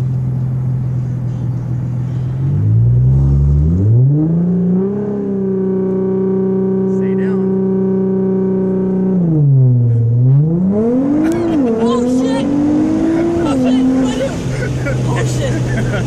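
Sports car engine idling, then revved with the brake held and kept at a steady launch-control rpm for about four seconds. On launch the revs dip under load, then climb in rising pulls broken by two quick upshifts before settling to a steady lower note.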